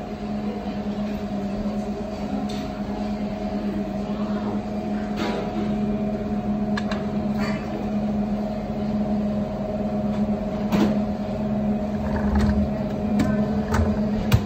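Steady machine hum from a refrigerated food display case, a low drone with a fainter higher whine over it. Scattered light clicks and clinks of tableware are heard over the hum, with a sharper knock just at the end.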